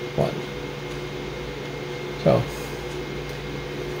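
A steady low hum with hiss, holding several constant tones, beneath two brief spoken words.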